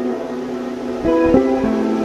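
Solo guitar played fingerstyle: held notes ring on, then a few new notes are plucked a little past halfway, forming a slow melody over a sustained chord.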